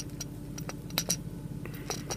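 A metal spoon clinking lightly against a small toy submarine as baking powder is spooned into its bubble chamber: a few faint, scattered clicks over a faint steady hum.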